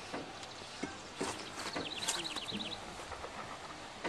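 A few sharp metal knocks and clinks of hand tools and a bar being worked against the engine under the car. About one and a half seconds in, a bird sings a quick, even run of short falling notes lasting about a second.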